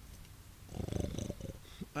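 A man making a low, rapidly rattling vocal noise, a grunt or growl lasting about a second from a little before the middle.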